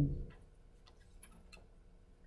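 Faint, scattered ticks of a marker pen touching an overhead-projector transparency as a few characters are written, over a faint steady hum.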